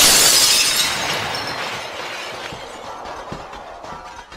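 Shattering sound effect for an animated logo breaking apart. A loud crash comes right at the start, then a crumbling, fragment-scattering noise fades away over the next few seconds, dotted with small clicks.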